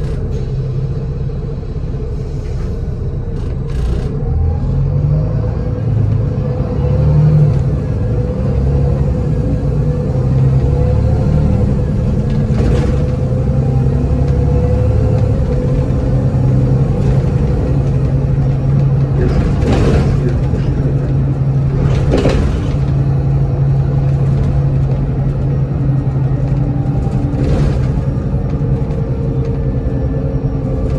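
Volvo D7C250 inline-six diesel engine of a Volvo 7700 city bus, heard from inside the cabin. Its note shifts during the first several seconds, then it runs at a steady drone. A few sharp knocks and rattles come from the bus body, about four times.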